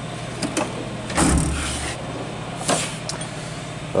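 Steel tool chest drawers being shut and pulled open on their slides: a few light clicks, a louder rumbling slide about a second in, then more knocks and a click. A steady low hum runs underneath.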